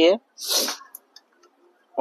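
A man's word ending, then a short breathy burst of air from him about half a second in, then quiet with a few faint ticks.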